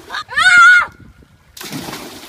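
A girl's high-pitched shriek lasting just under a second, then, about a second and a half in, the splash of someone jumping into a swimming pool.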